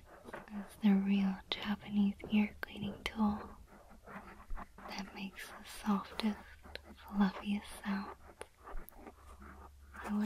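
A woman's soft, close voice speaking and whispering, with a faint low hum underneath.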